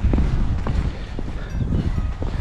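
Wind rumbling on the microphone as a steady low roar, with a few light footstep clicks while walking.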